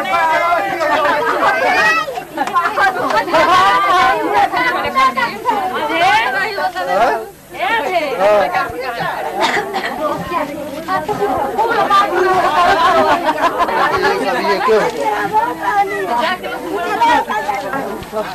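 Many people talking at once, their voices overlapping in a loud, continuous chatter, with a brief lull about seven seconds in.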